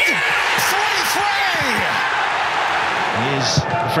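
A stadium crowd cheering and shouting after a goal, with many voices rising and falling over one another.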